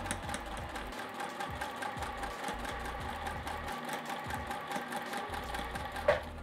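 Electric sewing machine stitching slowly and steadily through cotton fabric, the needle ticking fast and evenly over the motor's hum, as it sews a diagonal seam joining two quilt binding strips.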